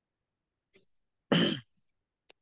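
A man clearing his throat once, a short, loud rasp about a second and a half in.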